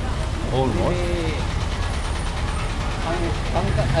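Steady low rumble of street traffic, with a heavy vehicle's engine running close by, under short bits of men's voices.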